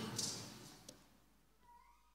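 The tail of a man's voice through the hall's microphone dying away in the room, then near silence with one faint click a little under a second in and a faint short gliding tone near the end.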